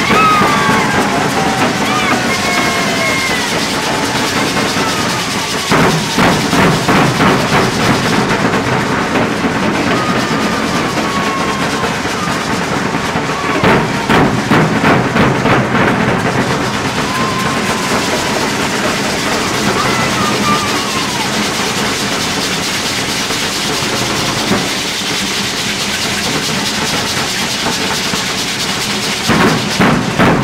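A danza drum group of bass drums and snare drums beats a steady dance rhythm, with heavier runs of beats about six seconds in and again around fourteen seconds. Voices call out over the drumming.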